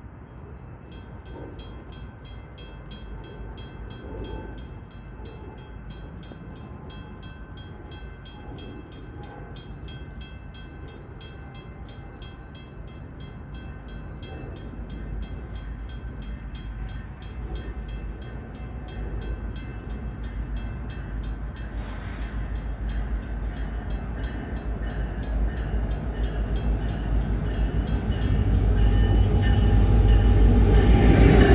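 Approaching freight train led by two EMD SD70ACe diesel-electric locomotives: a low engine rumble that grows steadily louder as the train nears, loudest near the end.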